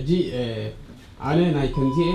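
A man speaking, in Tigrinya, into a handheld microphone in a small room, his voice coming through the PA. A thin steady tone comes in near the end.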